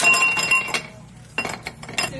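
Ice cubes dropping into a stemmed glass snifter, a rapid clatter of clinks with the glass ringing briefly. A second, shorter run of clinks comes about a second and a half in as the ice settles.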